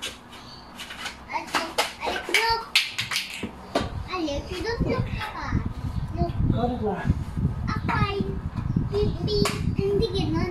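Young children's voices chattering, with a few sharp clicks and knocks in the first few seconds and a low rumble from about four seconds in.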